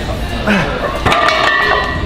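A metal clank about a second in, ringing on with a steady tone, from the steel weight plates of a plate-loaded gym machine, with voices in the background.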